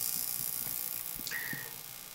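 A pause in speech: quiet room tone with steady low hiss, a few faint clicks, and a brief faint high note about a second and a half in.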